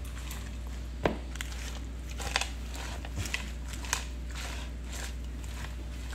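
Salad being tossed in a ceramic bowl with a silicone-tipped utensil: soft rustling and crunching of leaves and toppings, with a few short clicks of the utensil on the bowl, the sharpest about a second in. A steady low hum lies underneath.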